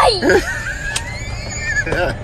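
A young girl's high, wavering voice, dropping sharply in pitch in the first half-second, then a faint thin rising whine, over a steady low background rumble.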